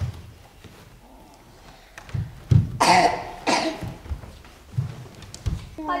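A person coughing twice, two short coughs about half a second apart. Soft low thumps come before and after the coughs.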